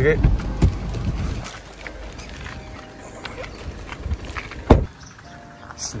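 Car door unlatched from inside and opened, with handling and movement sounds as someone gets out, and one sharp knock about three-quarters of the way through.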